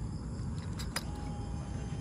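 A switch clicks about a second in as the LED auxiliary light is turned on, over a low steady rumble; a faint thin steady whine follows the click.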